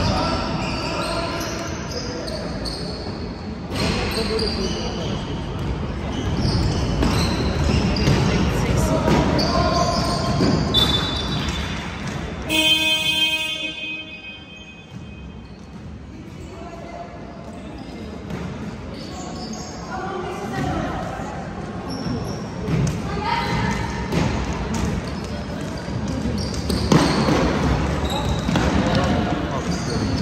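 Basketball bouncing on a hardwood gym court amid players' and spectators' voices during a game. About halfway through, a short pitched buzzer-like tone sounds, and the court noise drops for a few seconds before picking up again.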